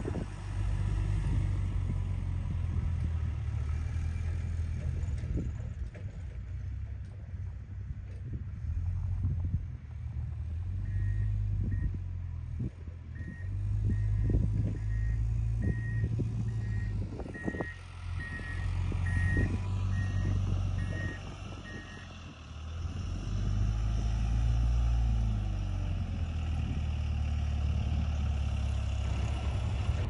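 A vehicle's engine running with a low rumble, with a reversing alarm beeping about twice a second for roughly ten seconds in the middle.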